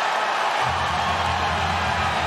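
Arena crowd cheering a fight-ending TKO, a steady roar. Music with a heavy low end comes in about half a second in.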